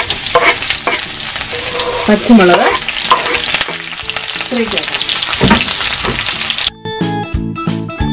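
Sliced vegetables and green chillies sizzling in hot oil in a wok, with a wooden spatula stirring and scraping against the pan. Near the end, keyboard music comes in over the frying.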